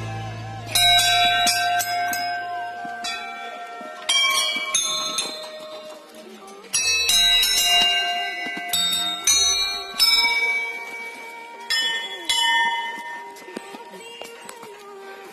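Hanging brass temple bells struck one after another by people passing, about eight strikes a second or more apart. Each strike gives several overlapping ringing tones that die away slowly, and the later strikes overlap the earlier ones.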